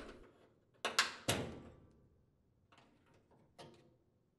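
Metal spring clips being snapped out of a washing machine's sheet-metal cabinet with a flathead screwdriver: two sharp metallic snaps about a second in, half a second apart, each ringing briefly, then a few fainter clicks near the end.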